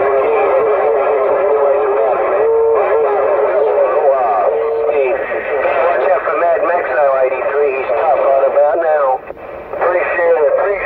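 CB radio receiver's speaker playing several stations transmitting over each other: garbled, overlapping voices over a steady whistle that steps up in pitch twice, a sign of stations keying up at the same time on one channel.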